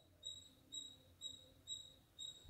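Near silence with a faint, high-pitched chirp repeating evenly about twice a second, each chirp short and steady in pitch.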